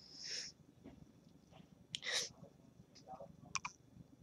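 A person sniffling through the nose: a few short, faint sniffs, the loudest about two seconds in.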